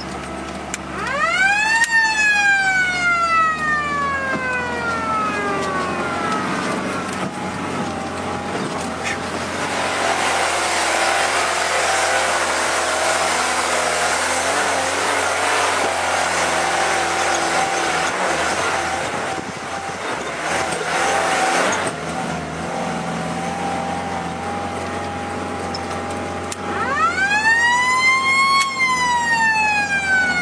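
Lada Niva VAZ-2121 climbing a dirt track off-road, heard from inside the cabin: engine and drivetrain run under load with road noise. Twice, near the start and near the end, a high whine rises sharply with the revs and then falls slowly as they drop.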